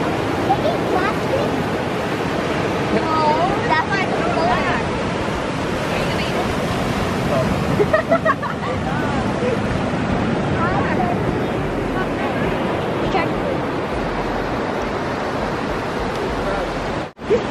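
Steady wash of surf on a sandy beach, with faint voices now and then.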